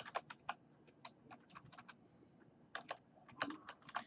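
Faint, irregular keystrokes on a computer keyboard as someone types, with a short pause a little past the middle.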